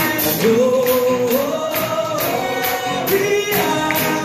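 Live band playing a worship song: several voices singing together in long held notes over electric guitars, bass and drums, with a steady beat of high hits about twice a second.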